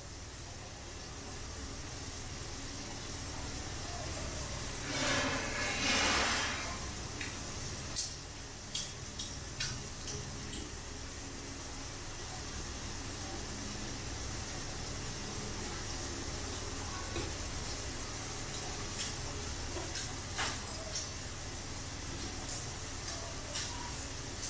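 Chicken and chilies simmering in a wok over a small gas flame: a steady high sizzling hiss, louder for a second or so about five seconds in, with a few light clicks and taps.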